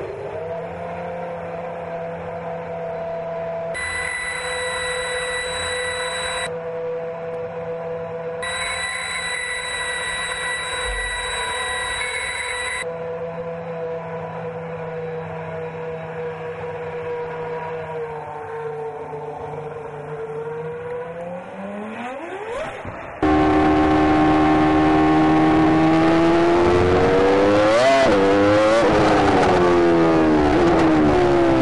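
Red Bull Formula One showcar's engine idling steadily in the pit garage, with a high whine joining it twice, then climbing in pitch as it is revved. About 23 s in it cuts to the engine heard onboard, much louder and at high revs, its pitch falling and climbing again.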